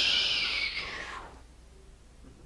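A man's mouth-made hissing "pssshhh" sound effect, sliding slightly lower and fading out just over a second in, acting out a tumour shrinking away to nothing.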